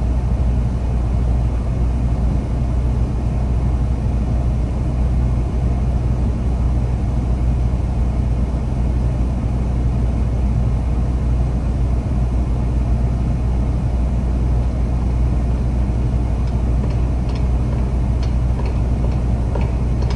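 Steady low engine rumble running without change, with a few faint light ticks near the end.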